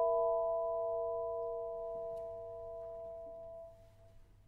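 A chord of a few pure ringing tones from struck mallet percussion, left to die away slowly and fading out near the end.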